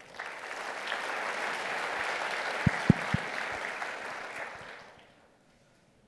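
Audience applauding for about five seconds, then dying away. Three short low thumps come in the middle.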